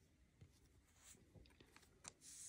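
Near silence with a few faint rubs and ticks of a trading card being handled between the fingers.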